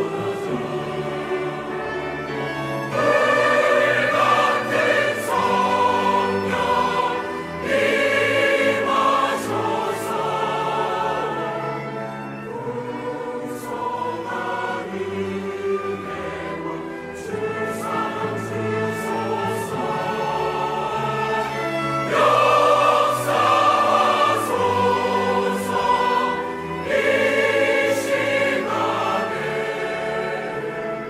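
Mixed choir of men and women singing a hymn in Korean, accompanied by a chamber orchestra, with the sung phrases swelling louder several times.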